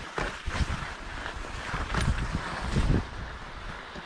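Wind buffeting a GoPro's microphone in uneven low gusts, with skis sliding over packed snow as the skier slows.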